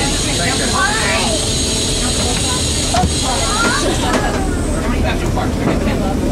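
Steady, loud rushing and humming of machinery heard inside the Atlantis IV passenger submarine's cabin as it rises to the surface, with passengers' voices faintly in the background.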